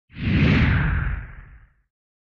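A whoosh sound effect with a deep rumble beneath a hissy sweep. It swells in quickly and fades out over about a second and a half.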